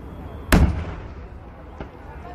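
Fireworks going off: one loud bang about half a second in that echoes away over the next second, then a much fainter bang near the end.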